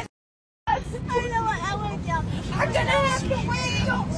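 Overlapping voices of several people talking at once in an airliner cabin, over the cabin's steady low hum. The sound drops out completely for about half a second at the start.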